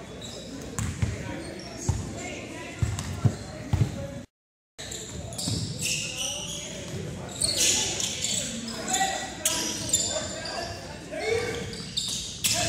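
A basketball bouncing on a hardwood gym floor during play, with sneakers squeaking and voices of players and spectators echoing in the large gym. The sound drops out completely for a moment about four seconds in.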